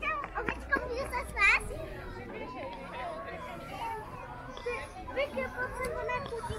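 Children talking and calling out, with one loud, high-pitched squeal about a second and a half in.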